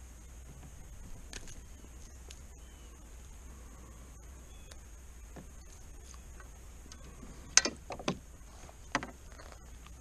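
A hooked smallmouth bass splashing at the surface beside a boat: three sharp splashes in the second half, the first the loudest, over a faint steady low hum.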